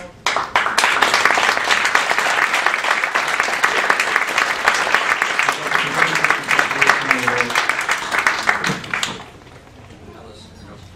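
Audience applauding, starting right away and stopping fairly sharply about nine seconds in.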